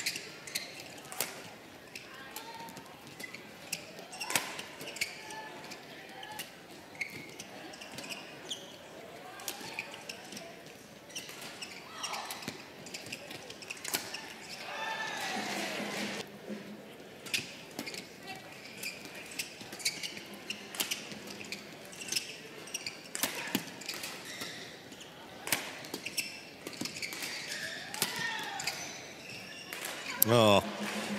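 Badminton rallies: rackets strike a shuttlecock again and again, giving sharp, irregular clicks, with pauses between points.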